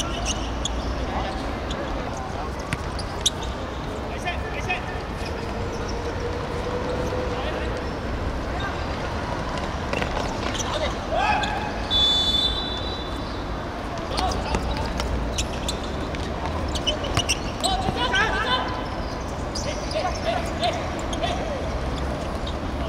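Small-sided football match on an outdoor hard pitch: scattered sharp thuds of the ball being kicked and bouncing, with shoe scuffs and a few brief shouts from players, over a steady low hum.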